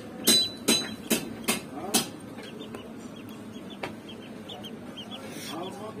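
Duckling peeping: a quick run of loud, sharp peeps, about two a second, for the first two seconds, then softer scattered peeps.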